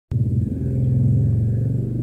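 A loud, steady low mechanical rumble with a humming drone, beginning abruptly just after the start.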